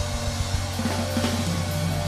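Live funk band playing: drum kit with bass drum and snare over a steady bass line and held notes.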